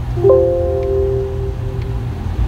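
A short electronic chime: two tones entering a tenth of a second apart, then ringing on together and fading over about a second and a half, over a steady low hum.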